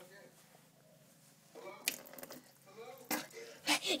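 A child's quiet voice, starting about halfway through and growing louder, with a few sharp clicks of a phone being handled close to the microphone.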